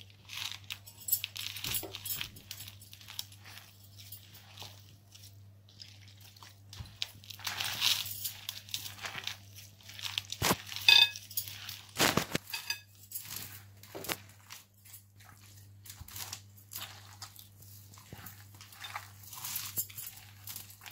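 Hands mixing and kneading besan and wheat flour with water in a glass bowl: irregular squishing and rustling, with occasional sharp clinks against the glass, one ringing briefly about eleven seconds in. A faint steady low hum runs underneath.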